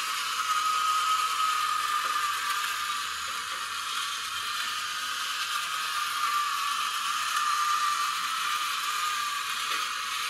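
A toy's small solar-powered electric motor and plastic gears whirring steadily, with a high whine that wavers slightly in pitch.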